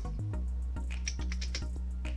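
Computer keyboard keys clicking in a short, uneven run as a search is typed, over background music with sustained low bass notes.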